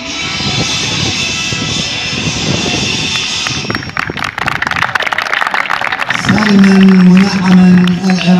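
Music playing, which stops about three and a half seconds in, then a round of hand clapping. Near the end a man's loud voice comes in with a long held sound.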